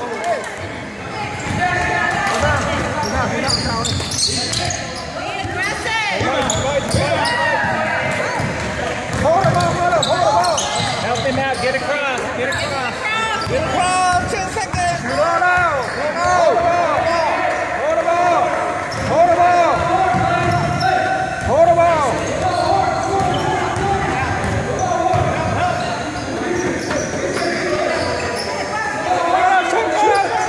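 A basketball being dribbled on a hardwood gym floor during a game, with players' footsteps and indistinct shouting voices in a large gym.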